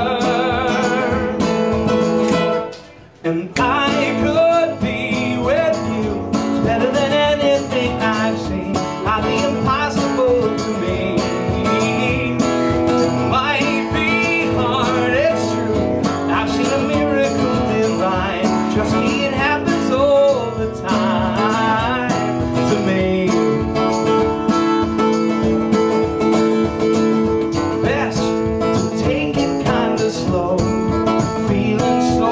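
A live song on guitar with a singing voice, the sound briefly dropping away about three seconds in before the playing resumes.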